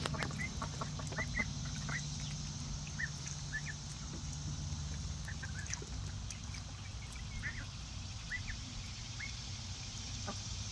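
Runner ducks giving short, soft calls here and there while paddling in a shallow pool, over a steady low hum.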